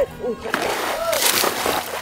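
Water splashing and sloshing as a hooked fish thrashes at the surface while an angler plays it on a bent rod, under background music.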